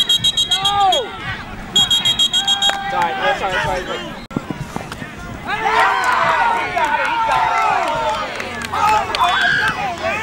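Two blasts of a referee's pea whistle with a fast trill, each about a second long, signalling the play dead. They are followed by loud overlapping shouts from players and the sideline crowd.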